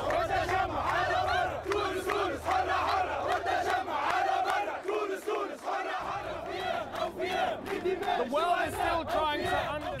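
A crowd of protesters shouting and chanting together, many male voices at once, over a low rumble that stops about six seconds in.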